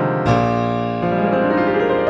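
Pianoteq's physically modelled Steinway Model D software piano, played dry with no reverb, sounding sustained chords over low bass notes. A loud new chord is struck about a quarter second in, and the chord changes again about a second in.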